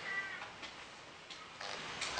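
A young kitten meowing: a thin, high call that trails off shortly after the start, followed by quiet room sound.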